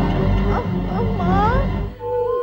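Loud, dramatic film score with heavy low tones. Over it, from about half a second in, a woman cries out 'Ma' in a wavering, sobbing wail. The low music drops away near the end.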